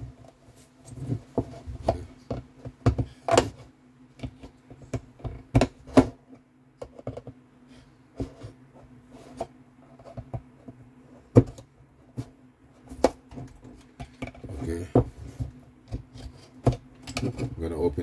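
Small screwdriver prying at the plastic housing of a CAS3 key-control module: irregular sharp clicks and scrapes as the tip works along the seam and the case latches give, with a few louder snaps.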